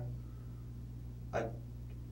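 A pause in the conversation: a steady low hum, broken about one and a half seconds in by a single short spoken syllable, "I".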